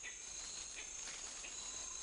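Tropical forest ambience: a steady, high-pitched insect drone with a few faint short chirps.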